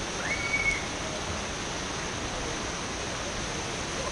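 Steady rush of water from a splash-pad fountain pouring over a slide dome into a pool. A brief high-pitched cry cuts in about half a second in.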